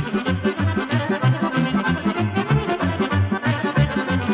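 Instrumental opening of a Vlach folk kolo dance tune: accordion-led band playing over a steady bass pulse of about four beats a second.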